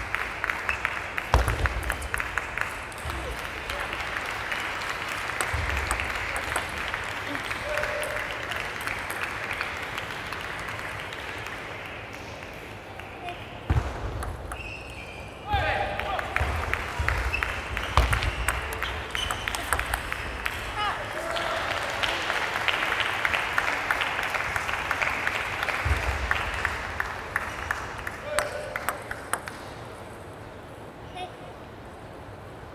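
Table tennis ball clicking sharply off paddles and the table, many quick clicks through rallies and the ball bounced on the table before serves, over background chatter.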